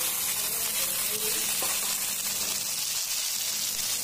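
Chopped okra sizzling in hot oil in a metal kadhai, just tipped in: a steady, even hiss.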